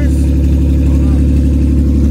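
Car engine idling steadily, a low even drone heard from inside the cabin.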